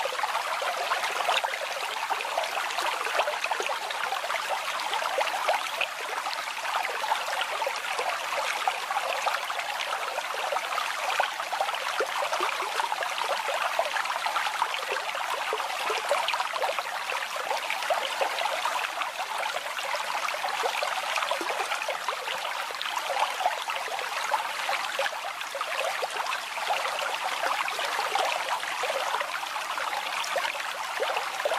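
Brook water babbling steadily, a dense patter of small splashes with no lull.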